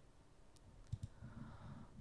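A few faint clicks from a computer mouse while paging through a document on screen, about half a second and a second in, over quiet room tone.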